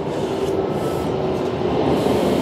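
Steady low rumbling background noise with a faint steady hum through it.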